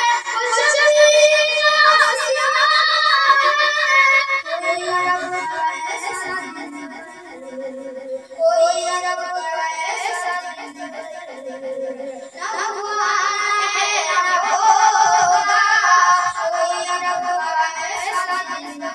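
A boy singing an Urdu naat, a devotional poem in praise of the Prophet, in long held melodic lines. The voice dips briefly about seven seconds in, then comes back strongly.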